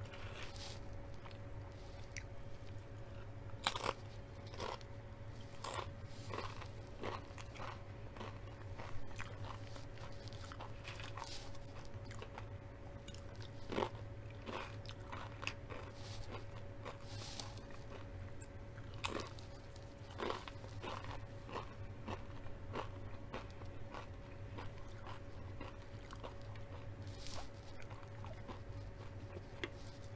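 Crunchy tortilla chips being bitten and chewed close to the microphone, with irregular crunches throughout, over a faint steady hum.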